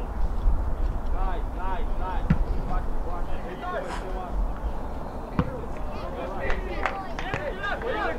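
Distant shouting voices of players and onlookers across an outdoor soccer field, over a steady low rumble, with two sharp knocks, one about two seconds in and one past the middle.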